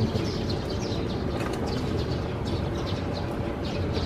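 Small birds chirping repeatedly in short, high, falling notes, over the low rumble of an open-sided shuttle cart rolling over cobblestones.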